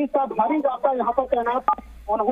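A voice talking over a telephone line, thin and cut off in the highs, with a short electronic beep about one and a half seconds in.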